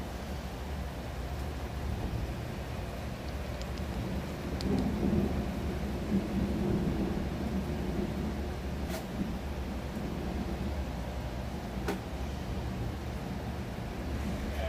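Steady rain with a low rumble of distant thunder that swells about five seconds in and dies back. Two sharp clicks sound near nine and twelve seconds.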